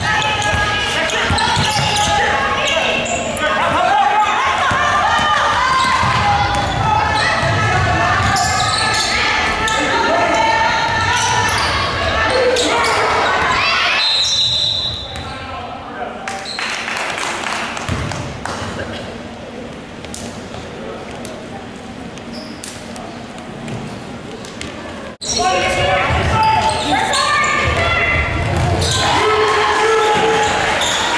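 Basketball being dribbled on a hardwood court, with players and spectators calling out in an echoing gym. A short high whistle blast comes about halfway through. The voices drop away for about ten seconds, then pick up again.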